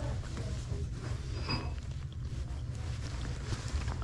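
Clothes on hangers being handled on a rack: fabric rustling and hangers shifting, over a steady low rumble.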